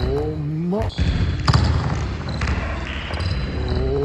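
A basketball dribbled on a wooden gym floor during a one-on-one drive to the hoop, with a voice-like sound gliding upward in pitch at the start and again near the end.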